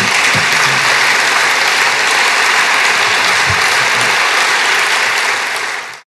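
Audience applauding steadily, fading away just before the end.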